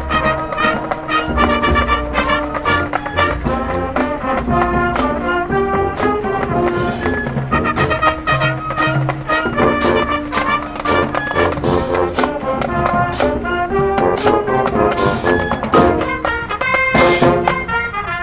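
High school marching band playing a brass arrangement of pop music, trumpets and trombones carrying the melody over steady drumline percussion.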